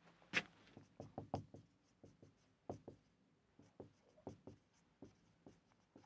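Marker pen writing on a whiteboard: faint, irregular short strokes and taps, the loudest about half a second in.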